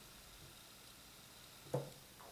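Near silence: quiet room tone, with one brief soft sound near the end.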